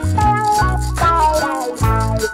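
Looped live instrumental music: an electric guitar playing a melody with bent notes over a looped bass line and a steady shaker-like percussion rhythm.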